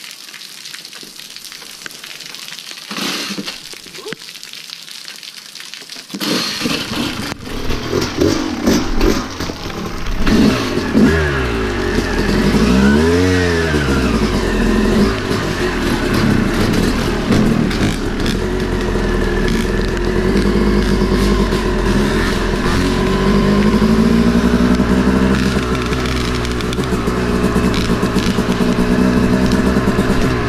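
Steady rain hiss, then from about six seconds in a Yamaha YZ250 two-stroke dirt bike engine running and being revved, its pitch rising and falling as the bike rides away.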